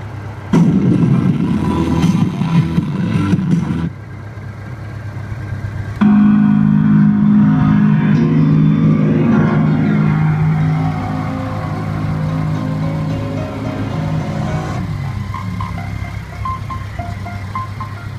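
Music played from a phone through a BMW K1200LT motorcycle's built-in audio system speakers, over a steady low hum. The music changes character about six seconds in and again near the end.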